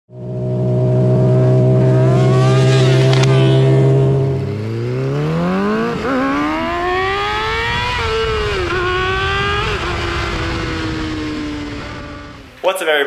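2007 Yamaha R6 inline-four with a GYTR exhaust, heard from an onboard camera. The engine holds a steady note for about four seconds, then revs up sharply under acceleration. The pitch breaks and dips at a couple of gear changes, and the note eases down gradually near the end.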